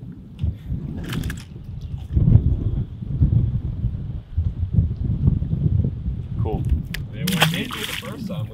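Wind buffeting the microphone in a steady low rumble. A small fish splashes into the water about a second in as it is tossed back overboard, and there is a louder splash of water near the end.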